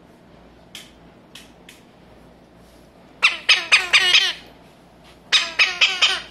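A parrot (loro guayabero) squawking in two quick bursts of short calls, each falling in pitch: about five calls a little over three seconds in, then four more near the end. A few faint clicks come before the calls.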